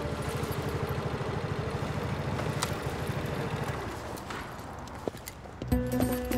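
Motorcycle engine idling with a steady rapid low pulse, fading away about four seconds in; soft background music runs underneath.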